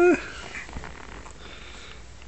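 A short high-pitched voiced call that wavers in pitch and breaks off just after the start, followed by quiet room sound with a few faint rustles.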